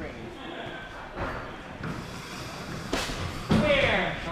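A knock about a second in and a sharp thud about three seconds in as the athlete comes off the hanging obstacle, followed by loud shouting voices.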